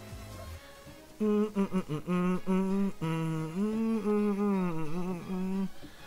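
A man humming a tune with closed lips, moving note by note through a melody, starting about a second in.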